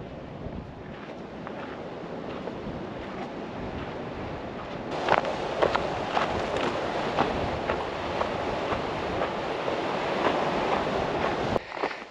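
Wind buffeting the microphone, with hiking-boot footsteps crunching on a gravel and stone trail from about five seconds in, roughly two steps a second.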